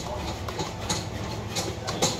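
Metal spoon scraping and stirring wet blended beetroot pulp in a plastic sieve, a run of irregular scrapes as the juice is pressed through.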